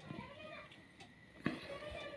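Faint voices of children talking and playing in the background, with a sharp click about one and a half seconds in.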